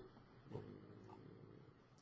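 Near silence: room tone, with a faint brief sound about half a second in.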